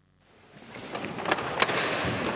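After a moment of near silence, a loud rush of noise swells up and holds, with two sharp clicks in the middle.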